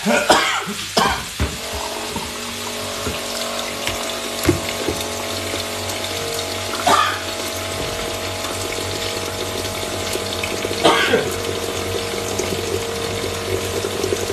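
Water running steadily, with a low steady hum under it. A few knocks of handling come near the start and at about seven and eleven seconds in.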